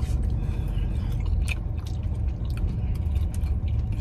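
A person biting into and chewing a slice of pizza, with small scattered mouth clicks and crunches, over a steady low rumble in the car's cabin.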